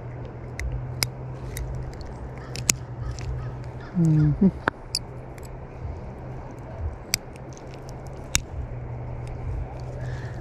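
Scattered sharp clicks and ticks of metal locking forceps and hands handling a hooked rainbow trout while the hook is worked out, over a steady low hum. A short voiced sound comes about four seconds in.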